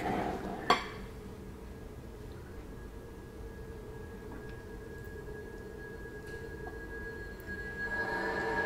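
A low, sustained eerie drone of the kind used in a horror film's soundtrack, with a thin high tone that swells near the end. A single sharp click comes just under a second in.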